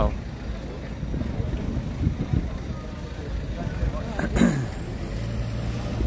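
Street ambience dominated by a steady low rumble of road traffic and vehicles near the kerb, with a brief voice of a passer-by about four seconds in.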